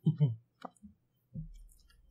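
A brief laugh, then a few faint clicks and a soft, dull bump about a second and a half in.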